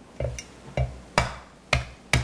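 Flat of a large kitchen knife slapped down on whole radishes on a wooden cutting board, four thumps about half a second apart. The radishes are being smashed rather than sliced, cracking them open so they soak up the sweet-and-sour dressing.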